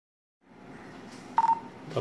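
A single short electronic beep about one and a half seconds in, the talk-permit tone of the Zello push-to-talk app as its talk button is pressed on a smartphone, over faint hiss.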